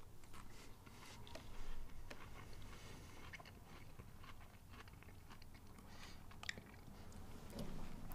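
Faint crunching and chewing as a mouthful of a chocolate-coated Oreo ice cream cone is eaten. The hard coating, made with crushed Oreo wafer pieces, gives scattered small crackles.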